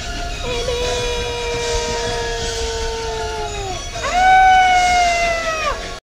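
A woman's voice giving two long, held screams: the first steady, sagging in pitch as it ends, and the second higher and louder, swooping up at its start and falling away at its end.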